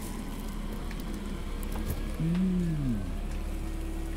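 A man's single short wordless vocal sound, about two seconds in, rising then falling in pitch, over a steady background hiss.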